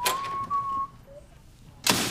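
A person whistling a short, slightly rising note in the first second, then a sudden loud crack near the end that dies away over about half a second.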